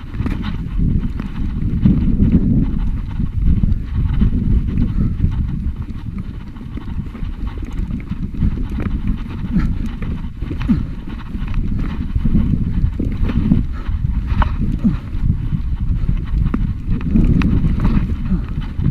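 Mountain bike riding over a rocky, stony trail: tyres knocking and crunching over loose stones and the bike rattling with each impact, over a steady low rumble.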